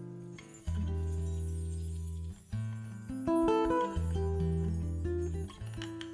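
Nylon-string acoustic guitar fingerpicking chords over low bass notes in a live band's instrumental passage, a new chord struck every second or so and left to ring down.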